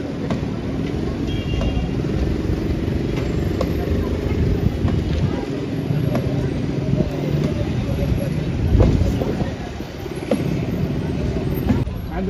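A crane truck's engine running over a background of voices, with a few scattered knocks and one heavy thump about nine seconds in.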